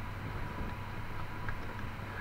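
Steady low background hum and hiss of room tone, with a faint click about one and a half seconds in as a resin coaster is handled.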